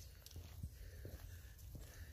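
Quiet: a faint low rumble with a few soft clicks and taps, like handling noise at the microphone.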